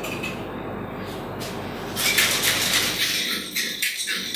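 Boston cocktail shaker, a metal tin capped with a glass, being shaken hard; its contents rattle rapidly against the sides, starting about two seconds in.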